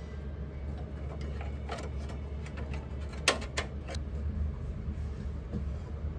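A few small sharp clicks of an M.2 SSD and its cover being handled and fitted at a motherboard's onboard M.2 slot, the sharpest pair about halfway through, over a steady low background hum.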